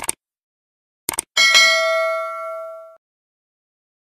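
Short mouse-style clicks, a second cluster of clicks about a second in, then a single bright bell ding that rings on in several steady tones and fades out after about a second and a half: a subscribe-button and notification-bell sound effect.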